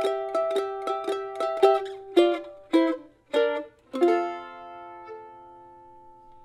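F-style mandolin, flatpicked: a double stop picked in even straight quarter notes, about four strokes a second, then a few notes walking downward from about two seconds in. A final chord is struck about four seconds in and left to ring and fade.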